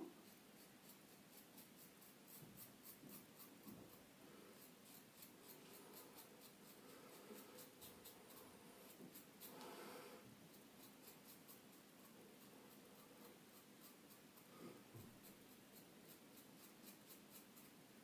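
Faint scratchy crackle of a Rubin-1 adjustable double-edge safety razor cutting stubble on the chin and neck during the second pass: a run of short, quick strokes, with one slightly longer rasp about halfway through.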